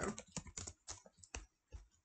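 Typing on a computer keyboard: a quick, irregular run of light key clicks, about a dozen keystrokes.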